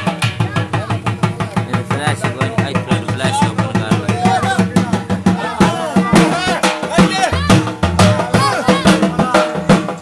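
Dhol drum beaten in a fast, driving jhumar rhythm, with a wavering melody line over the drumming.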